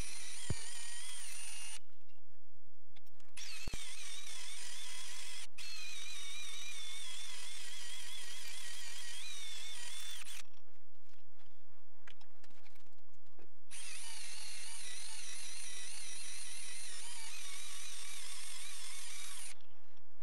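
Metal lathe running while a cutting tool machines the bore of a part held in a four-jaw chuck. A high wavering whine from the cut drops out twice for a second or more.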